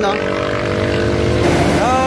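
Road traffic, with a motor vehicle's engine running steadily close by; the sound breaks off about one and a half seconds in.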